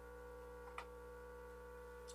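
Near silence with a steady electrical hum made of several fixed tones, and one faint click about 0.8 seconds in.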